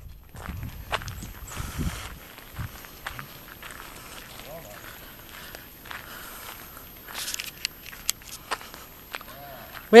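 Footsteps on a gravel driveway, with scattered short clicks.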